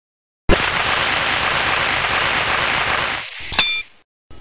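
Sound effects of a film countdown leader: a sudden steady hiss starts with a click about half a second in, runs for nearly three seconds and fades. Near the end comes a sharp click with a short ringing beep, the first of the countdown ticks.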